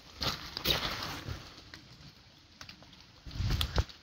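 Footsteps on wet, leaf-covered ground: irregular soft crunches and scuffs, a few more of them bunched near the end.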